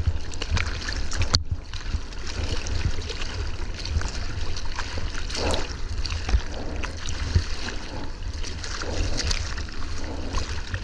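Sea water splashing and sloshing over the nose of a surfboard as it is paddled through chop, heard close up from a camera on the board, with a steady low rumble of water against the housing. Irregular splashes come from the board's nose and the surfer's arm strokes.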